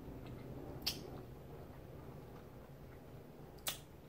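Two sharp mouth clicks while hard cola candies are sucked and chewed, one about a second in and one near the end, over faint room hum.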